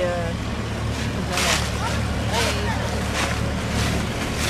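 Small motor cruiser's inboard engine chugging steadily at low speed as the boat passes close by, with wind on the microphone now and then.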